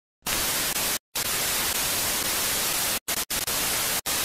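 Television static: a steady, even hiss, broken by short sudden dropouts to silence about a second in, twice just after three seconds, and at the end.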